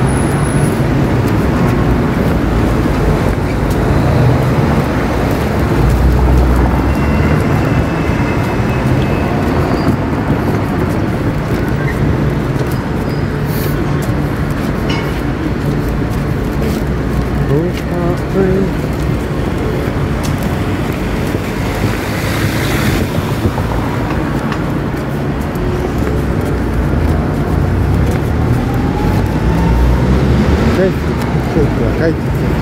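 City street traffic noise: a loud, steady rumble with a few sharp clicks.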